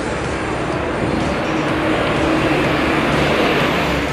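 Busy city street traffic: a steady wash of road noise with a motor vehicle's engine hum that builds to its loudest about three seconds in.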